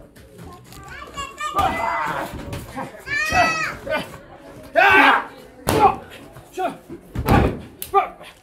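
Spectators shouting and yelling around a wrestling ring, children's voices among them, with a high yell about three seconds in. A heavy thud near the end comes as a wrestler is taken down onto the ring canvas.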